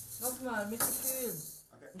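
A woman's voice, faint, gliding up and down in pitch for about a second, then fading almost to nothing near the end.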